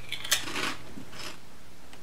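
Crunching of a kettle-cooked potato chip being bitten and chewed: a cluster of crisp crunches in the first second, then one fainter crunch a little later.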